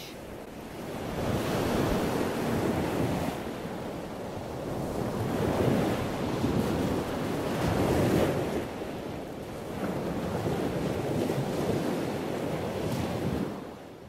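Rushing water noise like ocean surf, swelling and easing every few seconds in slow waves.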